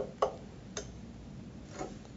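A few light, irregular clinks of laboratory glassware knocking together as a pipette transfer is repeated.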